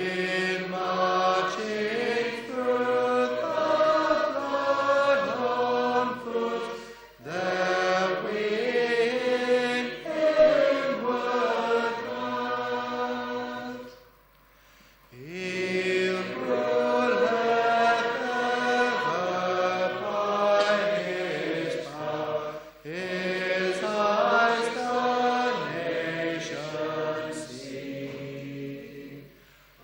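Congregation singing a hymn together in long sustained phrases, with short breaths between lines and a longer pause about halfway through.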